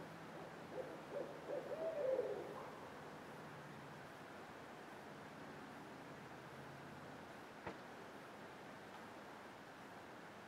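An owl hooting: a quick run of hoots rising and falling in pitch, lasting under two seconds, starting about a second in. A single faint click near the end.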